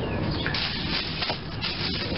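A plastic bag rustling and crinkling as a hand rummages through it, starting about half a second in.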